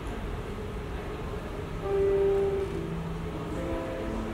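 Low hall hum, then about two seconds in an instrumental backing track starts over the hall's sound system with long held chord notes, the intro to the song she is about to sing.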